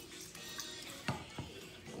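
Two soft clicks a second or so apart from a hand-held metal lever citrus squeezer being worked over a glass tumbler, against faint background music.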